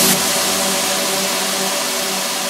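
Electronic music transition effect: a hit at the start, then a sustained white-noise wash over a held low tone, with the beat dropped out. The low end thins out as it goes.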